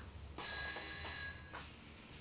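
A bell-like ring with a clear, high tone that starts suddenly and lasts about a second.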